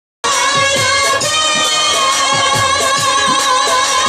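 Live jatra folk song: a woman singing over a band with a steady drum beat. The sound drops out for a moment at the very start, then the song carries on with a long held, wavering note.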